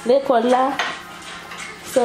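A fork scraping and clinking against a plate of food as someone eats. A short voice sound rises and falls at the start and comes again at the very end.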